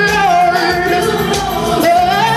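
A boy singing a gospel worship song into a microphone, his voice sliding and bending through drawn-out notes over backing music.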